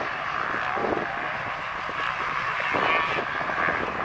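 Motocross motorcycle engines running during a race, a steady buzzing drone.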